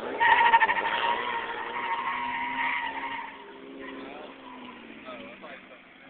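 A car's tyres squealing on pavement for about three seconds and fading away, followed by the car's engine, fainter, rising and falling in pitch.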